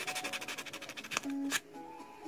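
X-Acto knife blade scraping Arches hot-press watercolour paper to remove an ink mistake down to bare paper: a fast, scratchy rasp of rapid strokes that stops a little over a second in, followed by a single click.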